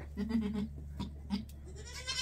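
A doe goat's soft, low call, about half a second long, followed a moment later by a brief second one, over a steady low hum. This is a new mother talking to her newborn kid as she sniffs it, a good sign that she is taking to it.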